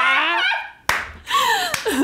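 A man and a woman laughing loudly, broken about a second in by a single sharp hand clap.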